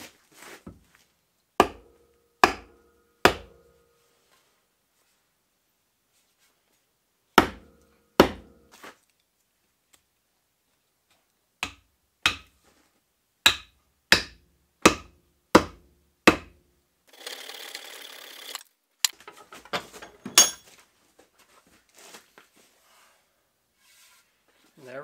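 A block of wood used as a mallet knocking the end of a wooden axe handle, driving it into the eye of a six-pound forged axe head to hang the head. There are about a dozen sharp wooden knocks in three groups, with a short scrape and a few lighter knocks near the end.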